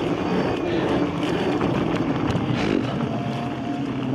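Inmotion V14 electric unicycle riding along a dirt trail: a steady rush of rolling and wind noise, with a faint steady whine near the end.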